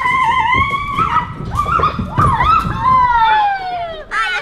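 Children shrieking in long, loud, high-pitched cries that waver in the middle, the last one sliding down in pitch near the end.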